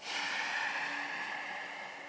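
A person's long audible exhale, starting suddenly and fading out over about two seconds.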